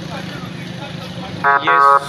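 Street traffic: a steady low engine hum and road noise from passing vehicles and motorcycles. A brief loud pitched sound comes near the end.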